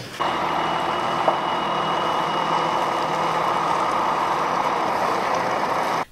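Bus engine running steadily, with a faint steady high whine over an even noise.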